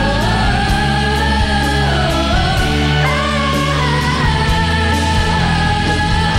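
Singers performing a Filipino pop song medley with band accompaniment, voices holding long notes that step up in pitch about three seconds in, over a steady bass and beat.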